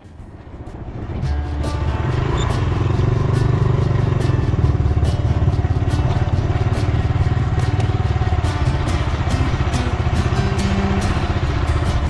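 Small Honda motorcycle engine running steadily while the bike rides along. Background music with a regular beat plays over it. The sound swells in over the first second or so.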